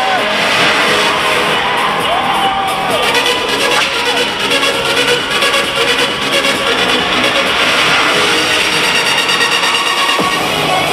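Loud electronic dance-pop music through an arena sound system, with no vocals, and the crowd cheering over it, heard from among the audience.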